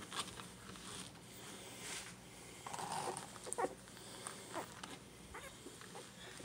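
Two-week-old toy poodle puppies giving a few short squeaks and whimpers, most of them around the middle, while they are handled, over soft rustling of fur against the mat.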